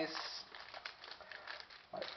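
Foil wrapper of a hockey card pack crinkling faintly and irregularly as fingers work at tearing it open; the pack resists opening.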